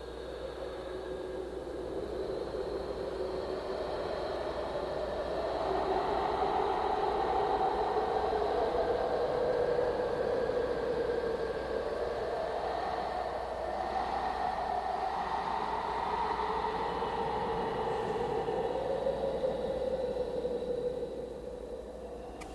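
A steady, rushing ambient drone that fades in, swells over the first several seconds and slowly wavers in pitch, easing off near the end.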